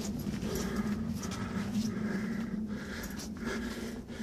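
A person's breathing and footsteps in a hallway, the steps as soft, regular strokes a little over once a second, over a steady low hum.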